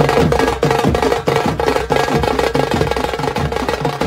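Rapid drumming on folk drums beaten with sticks, many strokes a second, with a steady held tone running through it.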